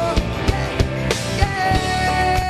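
Pop-rock band playing live: a drum kit keeps a steady beat under electric guitar and a male lead vocal. A long held note comes in about halfway through.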